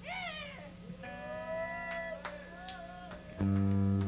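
Stray electric guitar noise through an amplifier between songs: a quick rising-and-falling pitch slide, then held ringing tones that bend slowly, and a loud low note that comes in near the end.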